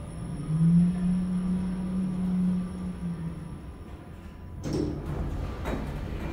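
Passenger lift travelling between floors: a steady low motor hum for about three seconds, then a sudden louder rush of noise about four and a half seconds in and a click near the end as the car arrives.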